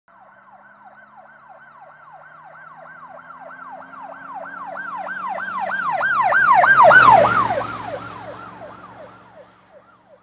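Emergency vehicle siren in a rapid yelp of about three falling sweeps a second, with the vehicle's engine beneath. It grows louder as it approaches, passes about seven seconds in with a drop in pitch, and fades away.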